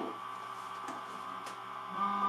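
Shower booster pump running in manual mode with its flow switch bypassed, a steady electric whine, with a couple of faint clicks as plug connectors are pushed together. Right at the end a second pump starts and the hum grows louder with a lower tone added.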